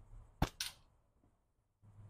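A single slingshot shot: the rubber bands are released with one sharp snap. A split second later comes a fainter, higher clatter as the ammo strikes the spoon target.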